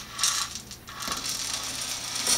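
Calcium nitrate granules poured from a small plastic cup into a plastic water jug. A short rattle comes first, then about a second of steady gritty hissing as the granules slide down the neck.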